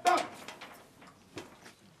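The end of a loud, drawn-out shouted drill call, cutting off a fraction of a second in, followed by two sharp knocks from the drilling squad's boots and rifles.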